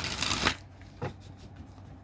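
A deck of oracle cards being shuffled by hand in a short burst lasting about half a second, followed by a single light tap about a second in.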